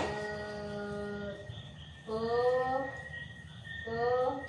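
A person's voice drawing out long vocal notes: one held level for over a second, then two shorter ones that rise in pitch. A faint steady high whine runs underneath.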